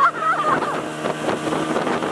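Speedboat running at speed: a steady engine hum under the rush of wind and water, with wind buffeting the microphone. A brief voice sounds at the very start.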